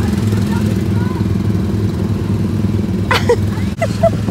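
Small engine of a theme-park ride car running steadily as the car drives along its track, with a short shout about three seconds in.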